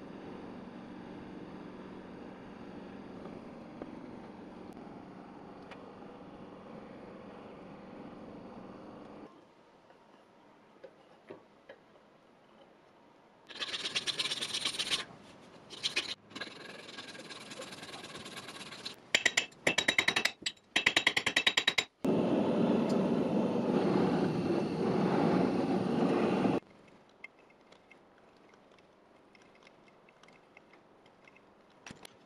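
Workshop sounds from building a trumpet. A handheld butane blowtorch flame hisses steadily for about nine seconds while heating brass tubing for soldering. After a quieter stretch with a few small clicks, loud bursts of rasping and scraping on metal follow, including a run of quick hand-file strokes, then several seconds of steady loud rasping before it goes quiet.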